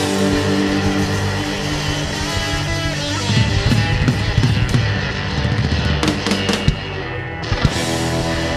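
Live blues band playing an instrumental passage: acoustic guitar over a drum kit with cymbals. The cymbals thin out briefly near the end, then come back in with fresh hits.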